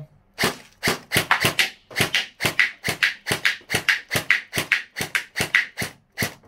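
LeHui Sig552 gel blaster firing gel balls in quick succession, a string of sharp shots at about six a second.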